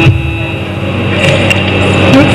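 Yakshagana percussion drums played in a loud, dense roll, opening with a sharp stroke, with a thin steady drone tone behind.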